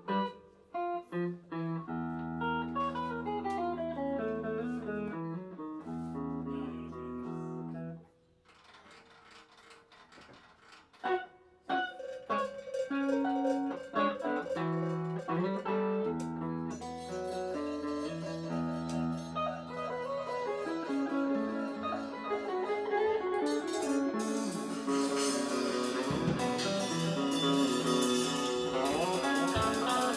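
Electric guitar improvising in long, held notes, dropping out for about three seconds near the end of the first third and then coming back in. In the second half drums and cymbals join, growing denser and louder toward the end.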